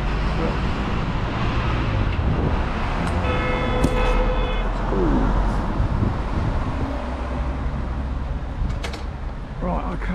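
Road traffic rumbling past on a busy street, with a vehicle horn sounding once for about a second and a half, a few seconds in.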